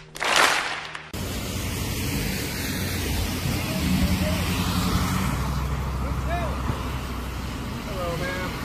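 A short burst of crowd applause, cut off about a second in, followed by steady road traffic noise: vehicles passing on a wet road, with a low engine hum under the tyre hiss.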